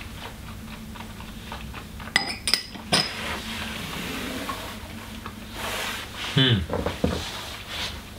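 Stemmed glass tasting glasses clinking as they are handled and set down on the table: three sharp, ringing clinks about two to three seconds in, followed by softer rustling.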